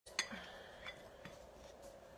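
A table knife clicks once, sharply, against a dish shortly after the start, followed by a few faint light ticks of utensils on the counter.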